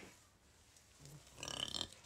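A woman's short burp in the second half, which she follows with "Oh, excuse me."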